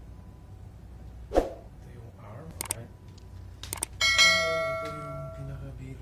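Subscribe-button sound effect: a thump, then a couple of quick clicks, then a bright bell ding that rings and fades over about a second and a half.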